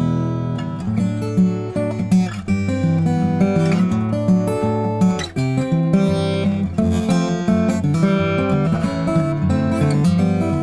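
Klapproth Basic Doubleshoulder fanned-fret acoustic guitar, maple and spruce, fingerpicked: a continuous passage of melody over strong, full bass notes.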